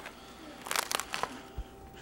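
A spoon scraping and knocking inside a sour cream tub, a quick run of scrapes about a second in.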